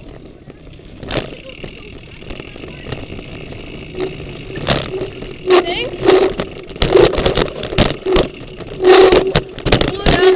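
A mountain bike rattling down a rough trail, heard from a helmet camera, with wind rush. From about four seconds in comes a string of loud clattering knocks as the bike hits rocks and roots.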